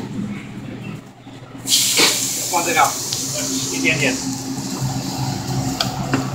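Food sizzling in hot oil in a restaurant wok: a loud hiss starts suddenly just under two seconds in and carries on steadily, over a steady low hum.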